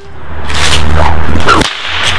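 A whip swung hard through the air, making loud swishing whooshes. The strongest comes about a second and a half in and cuts off sharply, and the swishing starts again near the end.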